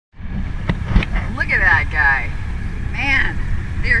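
Steady low rumble of a boat at sea, with two sharp knocks about a second in and brief voices exclaiming over it.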